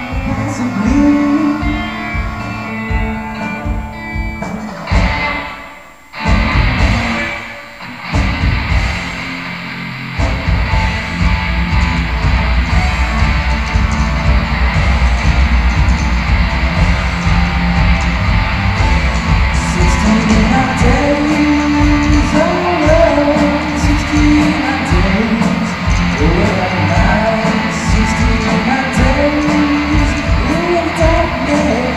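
A live rock band playing electric guitars, bass and a drum kit. The band thins out and nearly stops about six seconds in, then comes back in fully around ten seconds and plays on with heavy bass and drums.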